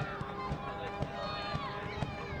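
Live soccer match field sound: players calling out on the pitch over a low murmur from a sparse stadium crowd, with a soft thud of the ball being kicked.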